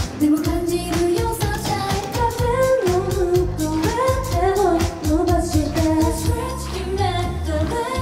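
Upbeat J-pop song sung live by a female vocal group, their voices carrying the melody over a pop backing with a steady drum beat.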